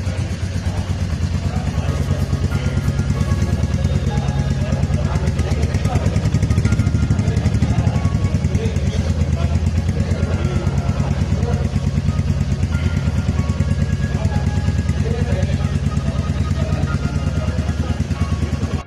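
Royal Enfield Meteor 350's single-cylinder engine idling steadily, with a fast, even exhaust beat.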